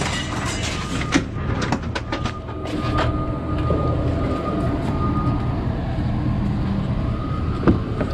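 Steady low hum of an idling truck engine, with several knocks and clicks in the first three seconds and one sharp click near the end as the cab door handle is pulled.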